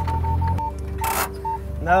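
John Deere Gator 825i utility vehicle reversing under GPS auto-steer: its low engine note stops about half a second in as it settles onto the line, while an electronic tone breaks into quick beeps. A short hiss follows about a second in, with a couple more beeps.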